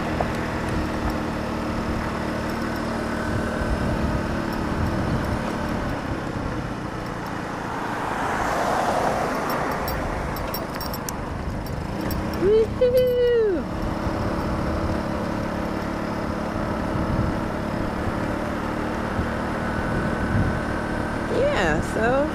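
A 150cc GY6 four-stroke single-cylinder scooter engine running steadily under way, mixed with road and wind noise. A rushing noise swells and fades about eight to ten seconds in, and a brief rising-and-falling vocal sound comes about twelve seconds in.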